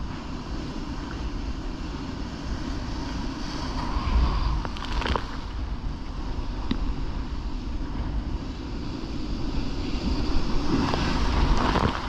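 Rough sea breaking and churning into white water around a sea kayak, with wind buffeting the microphone. The surf swells louder about four seconds in and again near the end.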